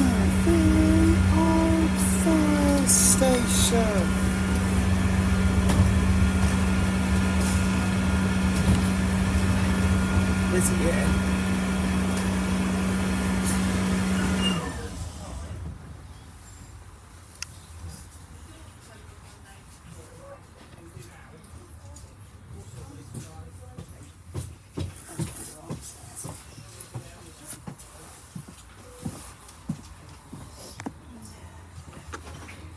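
Bus engine running with a steady low hum from inside the passenger cabin, then shutting off abruptly about fifteen seconds in while the bus stands still, leaving a much quieter cabin with scattered light clicks.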